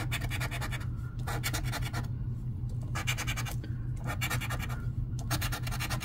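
A gold coin scraping the latex coating off a scratch-off lottery ticket in quick back-and-forth strokes. The strokes come in about five bursts with brief pauses between them.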